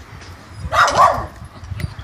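A dog gives a single short, loud bark a little under a second in.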